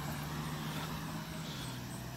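A car engine running at a steady speed, a low even hum.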